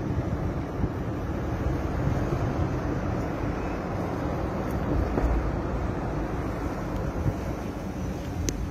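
Car driving along a street, heard from inside the cabin: a steady rumble of engine and tyre noise.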